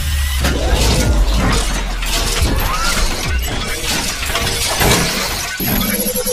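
Intro-sting sound effects: a loud, dense wash of crashing and shattering noise over a deep bass rumble, with music underneath.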